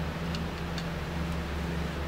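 A few faint, irregular light clicks as pliers tighten the small minute nut on a clock movement's shaft, over a steady low hum.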